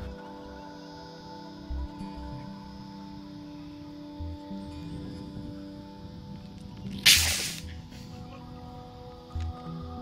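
Background music with steady tones, then about seven seconds in a short, loud hiss of compressed air as a bottle water rocket launches from its pad. The launch is pretty much air-only: the cornstarch oobleck loaded as reaction mass does not come out during the thrust phase.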